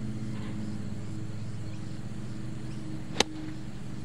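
A 54-degree wedge striking a golf ball: one sharp click about three seconds in, a strike a little high on the face. A steady low mechanical hum underneath.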